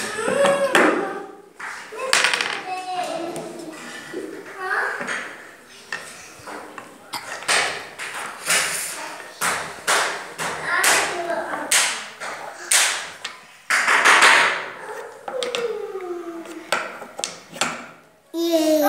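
Solid wooden knobbed cylinders knocking and clicking against their wooden block as they are lifted out of their holes and set back in. There are many sharp knocks at uneven intervals, with children's voices in the background.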